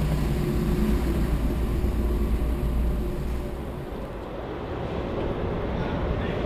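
Steady low rumble of a car's cabin as the car rolls slowly along a ferry's car deck. About four seconds in it gives way to the thinner, steady noise of the ferry's open car deck.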